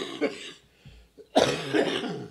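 A man coughing hard into his cupped hands close to a microphone, in two bouts of several coughs each. The second bout starts about a second and a half in.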